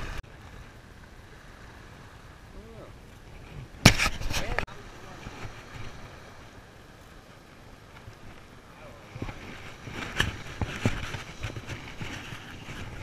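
Open-air beach ambience of wind on the microphone and a low wash of small waves, with faint distant voices. A sudden loud rush of noise lasts under a second about four seconds in. Near the end come a few short knocks of handling noise as the fishing rod is swung for a cast.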